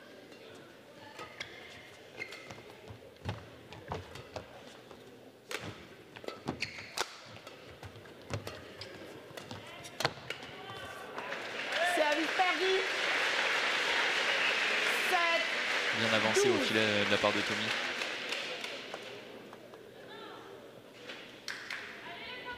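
Badminton rally in a sports hall: sharp racket strikes on the shuttlecock about once a second, ending about ten seconds in. The audience then cheers and applauds for several seconds, fading out near the end.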